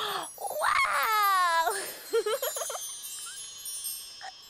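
A long sliding vocal 'whoo' that falls in pitch, followed by a magic-effect sparkle of high chimes and twinkles that ring on and fade away.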